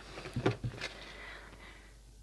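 Quiet handling sounds: a few faint taps and a soft rustle in the first second as a hand reaches into a cardboard box lined with tissue paper and picks out a small wooden dolly peg, then only low room noise.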